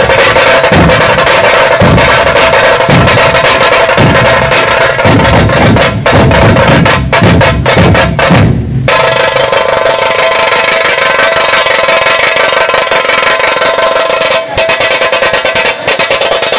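A dhol-tasha troupe drumming very loudly: big dhol barrel drums beat deeply while tasha drums keep up a dense, continuous rattle. The deep dhol beats drop out about halfway through, and the tasha rattle carries on alone.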